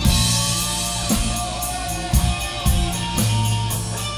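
Live rock band playing: electric guitar and bass over a drum kit, with steady bass notes and regular drum hits.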